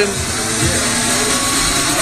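Loud, steady bar din: background music mixed with crowd chatter.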